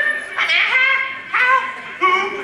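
A performer's voice making short, high-pitched wordless cries, about three in two seconds, each dipping slightly in pitch, in an animal-like vocal improvisation.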